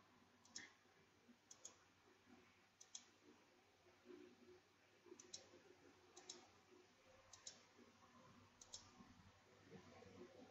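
Faint computer mouse clicks scattered through near silence, about seven of them, several in quick pairs.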